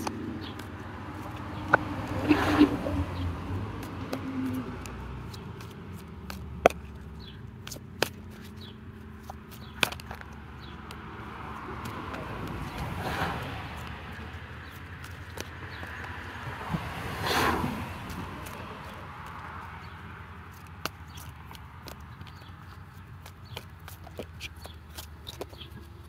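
Tarot deck being shuffled by hand, cards giving scattered light clicks and taps throughout, over a low outdoor background with a few soft swells of noise.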